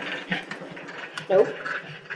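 A pug's breathing, an irregular breathy noise. A short spoken word comes about a second in.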